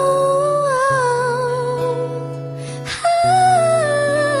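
A woman singing a wordless melody in two long phrases over acoustic guitar, the second phrase entering louder about three seconds in.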